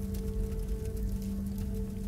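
Background music: a low, steady drone of held tones with no beat.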